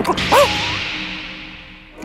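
A cartoon whoosh sound effect: a sharp swish at the start that fades away steadily over the next second and a half.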